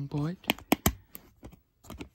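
Sharp plastic clicks from DVDs being handled in their plastic case: three close together, then a few more spaced out.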